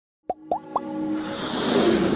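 Animated logo intro sting: three quick pops, each rising in pitch, about a quarter-second apart, then a swell of electronic music building up.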